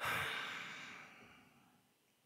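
A man's long sigh, a breathy exhale into close microphones that starts suddenly and fades away over about a second and a half.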